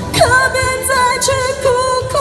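A woman singing through a microphone and street PA speaker over a pop backing track: the voice slides down and then holds long notes with vibrato, over a steady beat.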